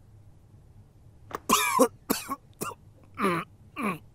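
A person coughing: a run of about five harsh coughs starting about a second and a half in, the first the loudest and longest.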